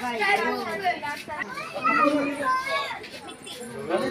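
Children and other visitors talking, their voices overlapping.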